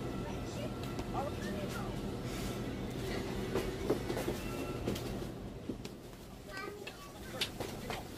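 Low-level household room sound: a steady low hum with scattered soft knocks and handling noises, and a few brief faint voices in the background.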